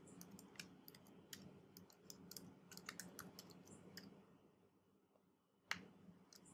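Faint computer keyboard typing: a quick, uneven run of key clicks that stops after about four seconds, then a pause and one louder click near the end.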